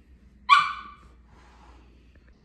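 A small dog gives one short, high bark about half a second in, dropping in pitch as it fades.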